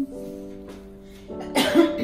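Soft background music with sustained piano-like notes, and a person coughing loudly near the end.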